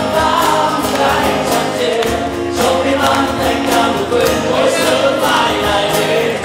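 A male voice singing a song to acoustic guitar, with a steady percussion beat about twice a second.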